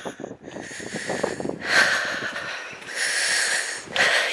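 A person's breathing close to the microphone: two long breathy exhalations in the second half, after a few faint steps on a gravel farm track in the first second or so.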